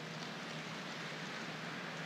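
Faint, distant applause from a large audience, heard as an even, rain-like hiss.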